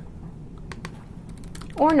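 Soft, irregular keystrokes on a computer keyboard, a handful of separate clicks as a short word of code is typed.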